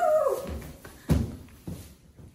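The tail of a shouted "woo!" falling away, then three dull thumps about half a second apart: feet landing on the floor as the cheer routine ends.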